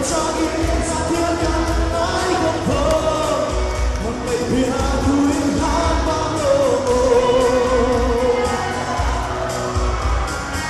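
A man singing a pop song into a microphone, backed by a live band, with a drum kit keeping a steady beat.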